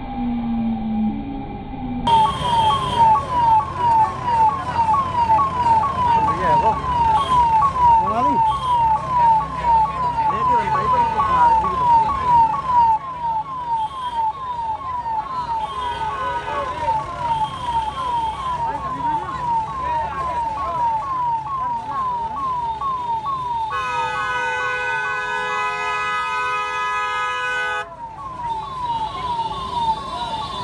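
Electronic siren sounding a fast, repeating downward sweep, about two a second. Near the end a steady held tone sounds for about four seconds over it.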